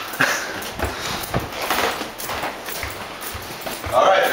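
Footsteps on a hard, polished corridor floor, a step about every half second to second.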